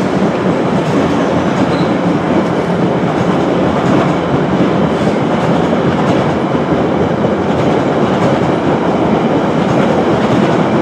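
Silver bilevel passenger railcars rolling past on the track, a steady rumble of steel wheels on rail.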